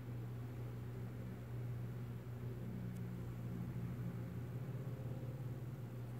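A steady low hum with an even hiss over it, and a faint tick about three seconds in.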